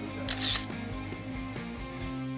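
Background guitar music with a camera-shutter sound effect about a third of a second in.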